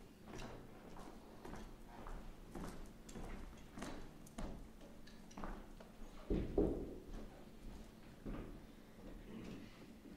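Irregular faint knocks and clicks, about one or two a second, with one heavier thump about six and a half seconds in.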